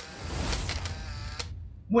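Electric zap transition sound effect: a click, then a hissing burst of noise with a low rumble underneath for about a second and a half, cut off by a sharp click.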